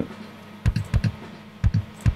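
Soloed kick drum track from the Pro Tools session playing back through studio monitors: a handful of short, dry kick hits, irregularly spaced. The hits are a kick recorded through an Antelope Verge modeling mic, auditioned while its microphone emulation is switched between models.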